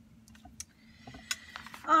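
A few faint taps and clicks of fingers pressing an embellishment onto paper, then a short run of paper handling as the journal page is picked up off the cutting mat. A woman's voice starts right at the end.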